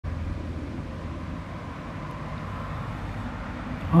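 Steady outdoor background noise: a low rumble with a soft hiss, with no distinct events.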